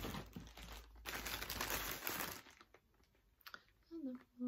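Rustling and crinkling for about two seconds while rummaging for a ball of yarn, then a few faint clicks and light handling knocks.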